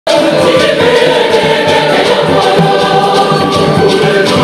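Large church choir singing together in full voice, loud and sustained, with a regular beat underneath.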